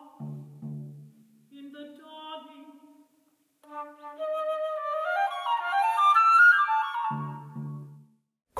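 Flute playing contemporary chamber music, with lower notes underneath at the start and again near the end. After a short silence about three seconds in, the flute climbs in a rising run of notes, the loudest part.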